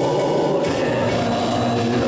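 Live band music with sustained held notes, from a small stage band of saxophone, accordion, electric keyboard and guitar.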